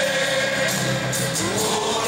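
A stadium crowd of football supporters singing a song together in unison, with long held notes.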